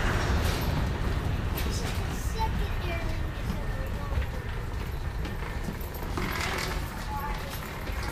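Faint, indistinct voices over a steady low rumble of background noise in an airport jet bridge.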